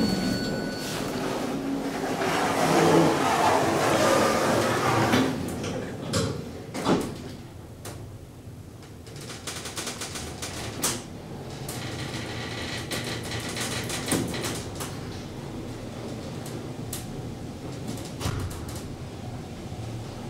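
Machine-room-less traction elevator: the automatic car doors slide shut, then the car travels between floors with a steady, quieter running noise and a few knocks.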